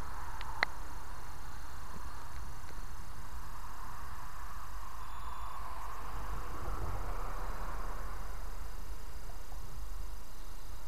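Quiet, steady outdoor background noise beside an empty railway track: a low rumble and a faint hiss with no train passing, and a small click about half a second in.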